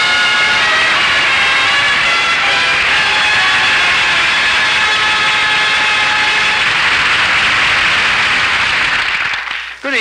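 Studio audience applause, steady for most of the time and dying away near the end. Orchestral music fades out under it in the first few seconds.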